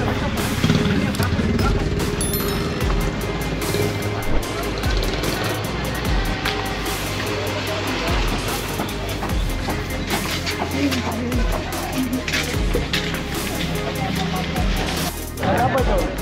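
Music with a steady beat playing over the bustle of a busy market and bus terminal: people talking and vehicles running.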